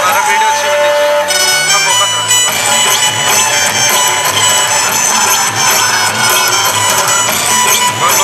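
Folk dance music playing loudly and without a break, its melody moving in long held notes over a steady beat.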